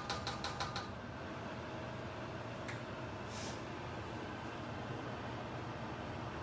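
A quick run of light taps, about five a second for the first second, as a small measuring cup is knocked against the rim of an enamelled cast-iron pot to shake out the last of the olive oil. After that a low steady kitchen background hum, with a faint click and a short hiss midway.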